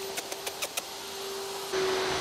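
A run of light, quick clicks through the first second: a spaniel's claws on a concrete floor as it trots up. A steady hum runs under it, and a louder hiss comes in near the end.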